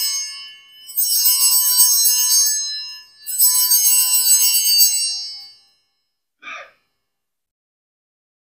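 Altar bells (a cluster of small sanctus bells) rung in three shaken peals of bright, high jingling tones, the first already sounding as it begins and each dying away before the next. They mark the elevation of the consecrated host.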